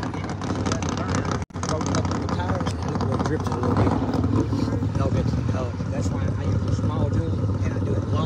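A car engine runs steadily in the distance, with people talking indistinctly over it. The sound cuts out for an instant about one and a half seconds in.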